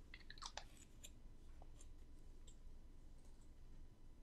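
Near silence with faint clicks and small handling noises from a small bottle of fragrance oil and a paper scent strip being handled, most of them in the first half second and a few scattered ticks after.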